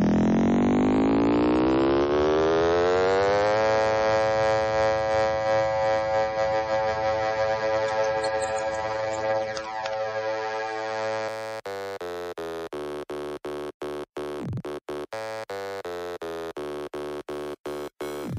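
Electronic dance music build-up. A synthesizer chord rises steadily in pitch for the first few seconds, then holds, and about two-thirds of the way through it is chopped into quick stutters, roughly two or three a second.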